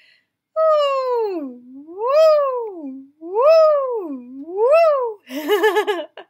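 A woman's voice sliding on a sung "ooh", swooping down and up four times in a zigzag, high-low-high-low, ending in a quick wavering. It is a vocal-exploration exercise tracing the zigzag line drawn on a pitch card.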